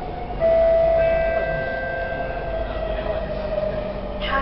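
MRT train slowing into a station, heard from inside the carriage: a loud whine starts about half a second in and sinks slowly in pitch, with fainter high tones joining briefly, over the rumble of the train.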